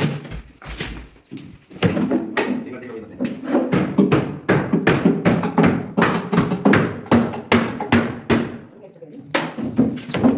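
Repeated knocks and bangs of cabinet panels being pried and pulled loose in a kitchen demolition, with voices over them.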